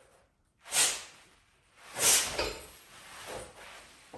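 A lacrosse faceoff player driving out of his stance against a resistance band: two sharp rushing bursts of breath and movement about a second apart, the second the loudest, then fainter ones near the end.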